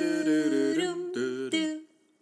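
Outro music sung by voices alone, a cappella: held notes that move in steps, stopping shortly before the end.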